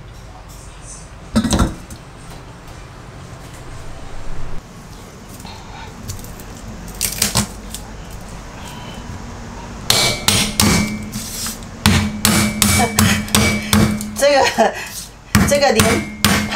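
Kitchen knife chopping garlic on a wooden chopping board: a steady run of sharp chops, about three a second, starting about ten seconds in. Before that, a couple of single knocks.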